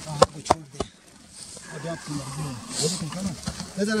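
Three sharp clicks in quick succession within the first second, then men talking in low voices.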